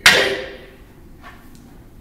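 A single loud, sharp wooden clack of two bokken (wooden practice swords) striking each other, echoing briefly in the hall before fading within about half a second.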